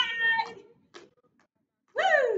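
A woman's voice giving one high, held call like a 'woo', lasting about half a second. A second call that falls in pitch starts right at the end.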